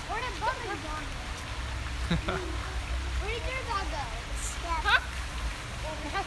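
Children's voices calling and chattering, high-pitched, with one rising squeal near the end, over a steady low rumble.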